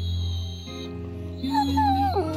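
Basset hound whining: a thin, high whine in the first second, then a wavering whine that bends down in pitch near the end. Background music plays underneath.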